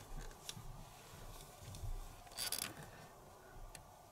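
Faint handling sounds of cotton crochet thread being tied into a knot around wrapped threads on a plastic tassel maker: a few small clicks and a short scratchy rustle about two and a half seconds in.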